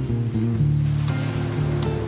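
Classical acoustic guitar playing a slow, soft piece over the wash of ocean waves breaking on a beach. The surf swells louder about a second in.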